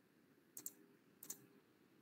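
Two short, faint clicks at a computer, about two-thirds of a second apart, against near silence.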